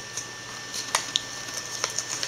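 Thin plastic seedling cups and potting soil being handled: soft rustling with a few faint light clicks and taps.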